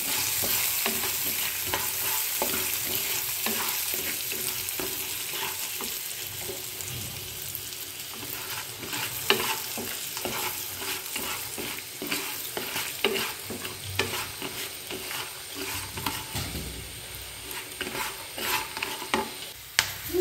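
Popcorn kernels sizzling in hot oil in a nonstick pan as they are stirred with a wooden spatula. Scattered sharp clicks from the kernels and spatula grow more frequent in the second half, as the first kernels begin to pop near the end.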